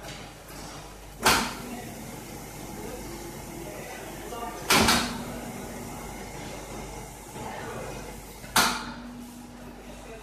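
Reversible dough sheeter running with a steady low hum, broken by three sharp clunks about three and a half seconds apart. Each clunk is followed by a short, steady hum from the machine.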